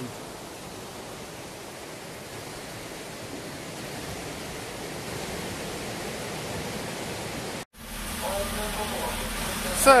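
Steady rushing of river water flowing below the walkway, growing slightly louder. After a sudden cut near the end, the low hum of a diesel train idling at a station platform.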